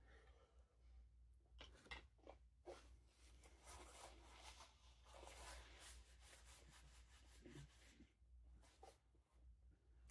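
Near silence: faint chewing and mouth sounds of someone eating, with a few soft clicks.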